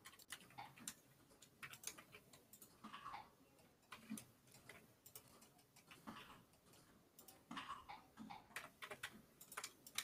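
Near silence, with faint, scattered clicks of a computer keyboard and mouse that grow a little denser near the end.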